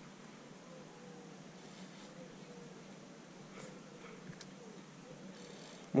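Faint, steady background hiss of outdoor ambience, with a few soft, brief sounds in the middle.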